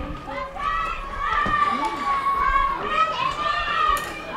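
Several children's voices overlapping, high-pitched and wavering, with no clear words.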